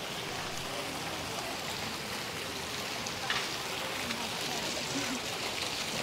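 Small water-jet fountain splashing into a shallow pool, giving a steady wash of water noise.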